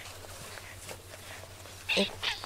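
Faint rustling and soft scratching of a hand or brush working through a cat's fur, over a low steady hum.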